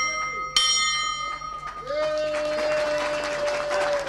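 Station bell struck by pulling its rope, a clang about half a second in whose tones ring on for over a second: the 'bell of hope' rung to mark a recovery from cancer. From about two seconds a brass band starts with a long held note over applause.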